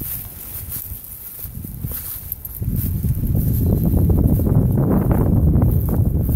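Wind buffeting the microphone: a low rumbling noise that grows louder about two and a half seconds in.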